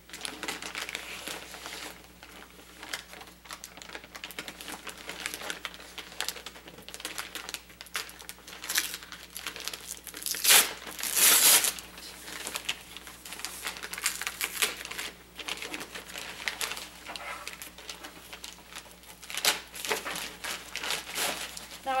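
Plastic wrapper of a sterile Foley catheter kit crinkling as it is opened and pulled off the tray, with the loudest rustles about halfway through.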